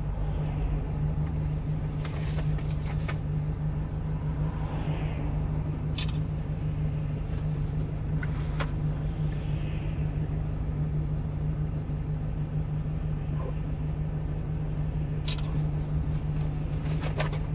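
A 1-ton refrigerated box truck's engine idling while stopped, heard from inside the cab as a steady low hum. A few short faint clicks come through it now and then.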